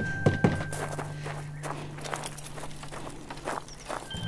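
Footsteps coming down wooden porch steps: a few heavy knocks in the first half second, then lighter, quicker steps. A steady low music drone with thin held high notes runs underneath.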